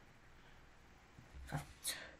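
Quiet room tone, with two faint, brief noises near the end.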